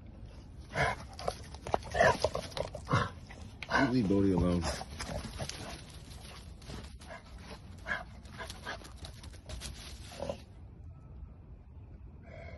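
Two American bully dogs playing rough, with short growls and grunts in the first half, the loudest a longer wavering growl about four seconds in, and paws scuffling through wood chips.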